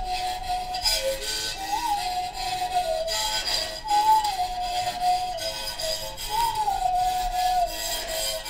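Mouth bow played by rubbing its string with a thin stick, the mouth shaping the overtones into a whistle-like melody. The notes are long and held, each with a brief upward flick, over a scratchy rasp from the stick's strokes.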